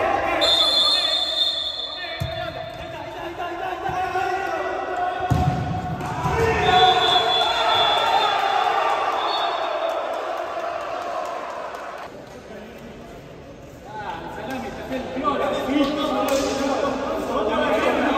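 Indistinct shouting voices echoing in an indoor sports hall, with a few thuds of a football bouncing on the court floor.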